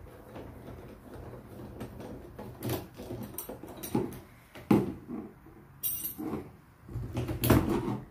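Metal clicking, scraping and knocking of a doorknob's spindle and latch hardware being worked loose by hand and with a thin tool. A few sharp knocks are spread through, the loudest near the end as the mechanism is pulled free.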